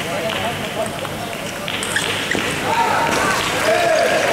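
Table tennis ball clicking off the paddles and table in a rally, over the steady chatter of a sports hall. A voice rises over it near the end.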